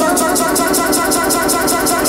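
Live electronic dance music from synthesizers and a drum machine: a fast hi-hat pattern of about eight ticks a second over a rapid, buzzy synth arpeggio, with no kick drum or bass.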